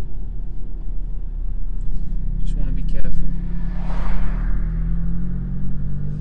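Ford Fiesta ST Mk7's turbocharged 1.6-litre four-cylinder engine running steadily at low speed, heard from inside the cabin. About four seconds in, a rushing swell rises and fades as an oncoming car passes close by.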